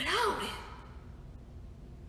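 A woman's short voiced sigh at the start, its pitch rising and then falling over about half a second, followed by quiet room tone.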